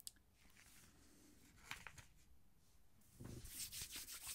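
Mostly near silence with room tone and a few faint clicks, then a short burst of rustling in the last second from hands or the sachet being handled.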